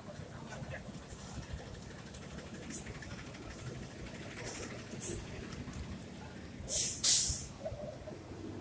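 City street traffic noise, a steady low rumble. Near the end come two loud, short hisses in quick succession.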